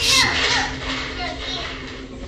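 A toddler's high voice crying out, loudest right at the start, followed by a few shorter falling calls.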